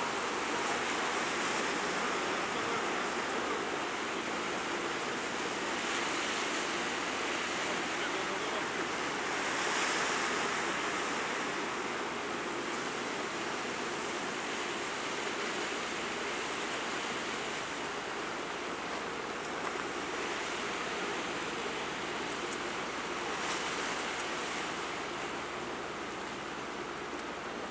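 Sea surf washing steadily against the shore, swelling gently a few times, most plainly about ten seconds in.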